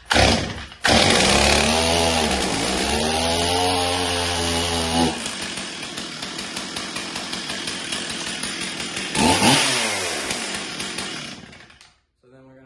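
Stihl MS 440 Magnum chainsaw's two-stroke engine catching about a second in and running fast on half choke with a wavering pitch, its chain held by the chain brake. About five seconds in the sound turns rougher and steadier. Near ten seconds it revs briefly, then winds down near the end.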